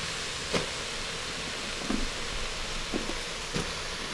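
Steady sizzling hiss from leeks cooking in an Instant Pot, with about four light knocks as diced potato cubes are dropped in and stirred with a wooden spoon.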